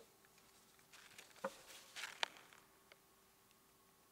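Near silence: room tone with a faint steady hum and a few soft clicks and rustles about a second and a half and two seconds in.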